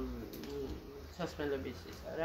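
A woman talking in Georgian, in short phrases with pauses, in a small room.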